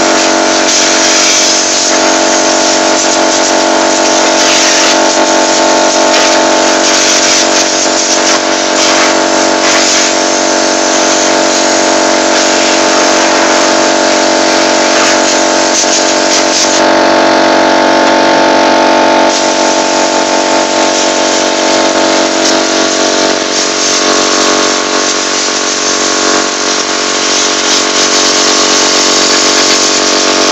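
Compressed-air blow gun hissing loudly and almost without pause as it blasts dust out of an open desktop PC case, surging and easing as the nozzle is moved, over a steady hum.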